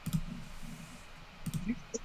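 A few sharp clicks, one near the start and another about a second and a half in, over a faint low murmur.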